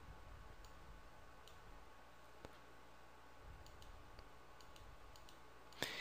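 Near silence with a few faint, scattered computer mouse clicks, made as entries in a software results list are selected.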